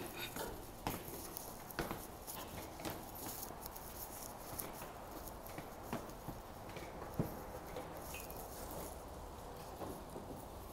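A rolling suitcase being dragged up stair steps, knocking against the treads with each step, along with footsteps: irregular knocks about once a second over a low background.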